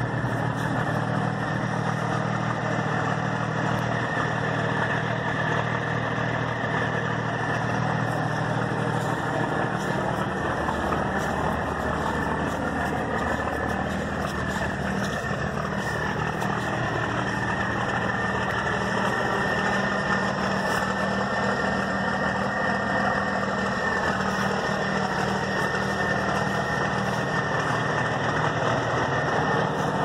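1977 Peterbilt 359's diesel engine idling steadily, running again after years of sitting.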